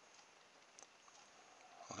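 Near silence: room tone, with one faint tick a little under a second in.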